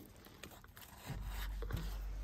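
Equipment in a plant storage cellar switching on: a steady low hum starts about a second in and keeps going.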